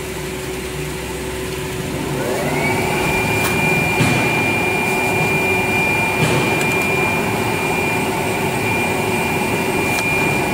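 Air bubble film coreless rewinder machine running with a steady hum. About two seconds in, a motor whine rises in pitch as the machine speeds up, then holds steady, with a few light clicks.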